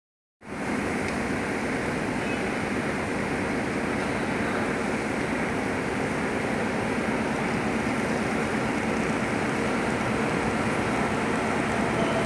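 Steady rushing noise of a covered railway platform as an electric commuter train approaches in the distance, getting slightly louder toward the end.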